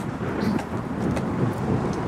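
Outdoor street background noise: a steady, low rumbling haze, with no single event standing out.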